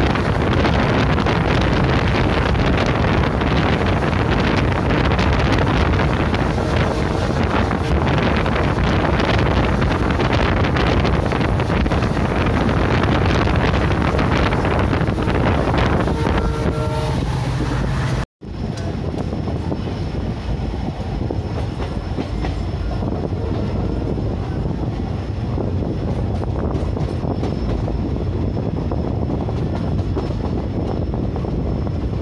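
Train running on the track, heard from the open door or window with wind on the microphone and the wheels clattering over the rails. A horn sounds for a second or two near 16 s. About 18 s in the sound cuts off abruptly, then the train noise carries on, somewhat quieter.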